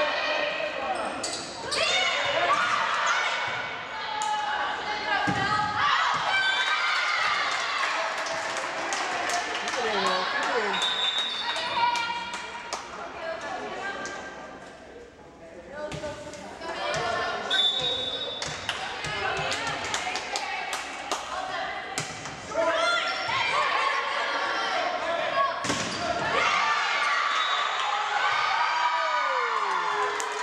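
A volleyball rally in a school gym: a volleyball being struck and hitting the floor again and again, echoing in the hall, among players and spectators calling out and talking.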